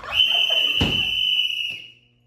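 A referee's whistle blown in one long, steady blast lasting nearly two seconds. A brief knock sounds partway through.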